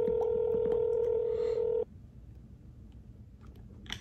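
Telephone ringback tone of an outgoing call: one steady ring lasting about two seconds, then it stops, while the call waits to be answered.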